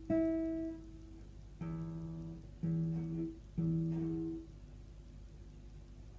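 Acoustic guitar played one slow plucked note at a time, about one a second, each left to ring. A higher note sounds first, then three lower notes follow, and the playing stops about halfway through.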